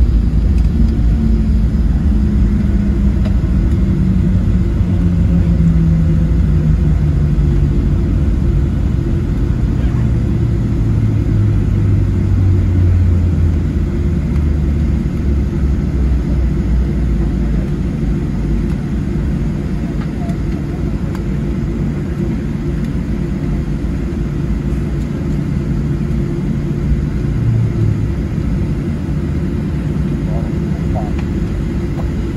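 Cabin sound of a Boeing 737-700 rolling out on the runway after landing: a steady low rumble, with the CFM56-7B engines' tone falling steadily in pitch over the first dozen seconds or so as they spool down toward idle.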